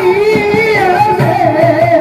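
Live Bengali folk-theatre music: a clarinet playing an ornamented, wavering melody over hand-drum strokes.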